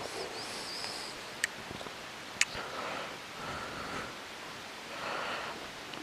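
Clothing rustling as hands rummage through a pile of clothes, with two short, sharp clicks about a second apart.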